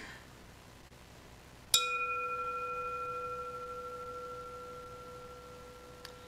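Hand-held singing bowl struck once a little under two seconds in, then ringing on with a low tone and two higher overtones that slowly die away with a slight wavering pulse; the highest tone fades out first.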